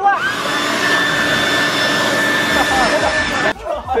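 Leaf blower running, its air stream aimed at a person's face: a steady rush of air with a high whine over it. It cuts off about three and a half seconds in and starts again just after.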